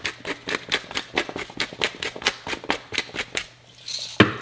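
Hand pepper mill grinding black pepper: a quick run of dry clicks at about five a second as the mill is twisted, stopping a little before the end.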